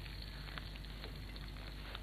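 Potatoes frying in olive oil in a pan: a low, steady sizzle with small scattered crackles.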